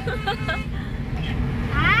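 Steady low rumble of road and engine noise inside a moving car's cabin, with short bits of talk over it in the first half second and again near the end.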